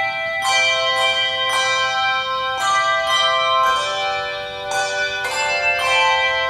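Handbell choir ringing a piece: chords struck about once a second, each note ringing on after it is struck.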